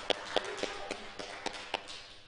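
Scattered hand clapping from a small audience, a few sharp claps a second, thinning out and dying away near the end.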